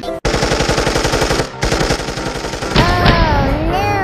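Machine-gun sound effect: a rapid burst of automatic gunfire, about ten shots a second, broken briefly near the middle. Near the end it gives way to a loud sliding, wavering pitched sound like a cartoon voice.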